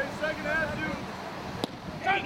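Faint voices talking in the background, then a single sharp knock about one and a half seconds in.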